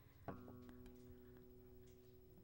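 Acoustic guitar chord struck softly just after the start, several notes ringing on faintly and steadily.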